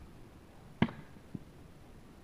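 A thrown tomahawk striking a wooden target round with one sharp thunk a little under a second in, followed by a fainter knock about half a second later.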